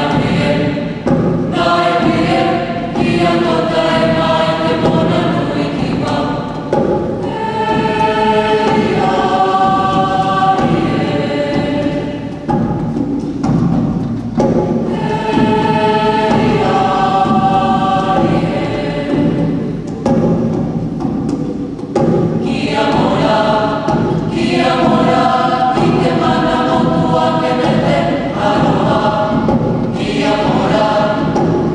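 Mixed choir of young male and female voices singing a Māori folk song a cappella in several parts, in phrases of a few seconds with short breaths between them.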